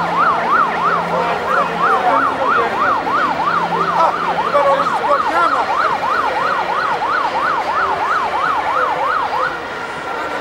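Escort siren sounding a fast yelp, its pitch sweeping up and down about three times a second, cutting off shortly before the end.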